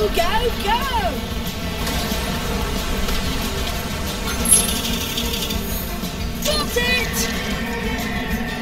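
Kart-racing video game audio: steady background music over a cartoon fire-truck kart's engine. Short sliding voice-like sounds come near the start and again near the end, with one sharp sound effect about halfway through.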